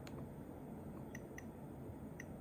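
Nest Learning Thermostat's control ring giving short, light clicks as it is turned through its menus: about four separate ticks, spaced unevenly, over a faint steady background noise.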